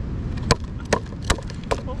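Fire-cooked mud crab's shell being struck with a hand-held rock to crack it: four sharp knocks about 0.4 s apart.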